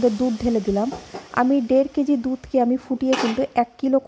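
Milk poured into hot ghee and whole spices sizzling in the kadai, the sizzle dying away within about the first second, under a woman talking. About three seconds in there is a short burst of hiss.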